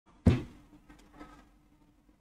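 A single sharp thump about a quarter second in, dying away quickly, followed by a few faint knocks and rustles.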